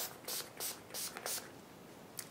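Skindinavia makeup finishing spray misted from a pump spray bottle onto the face: about five short, quick hissing sprays a third of a second apart, then it stops.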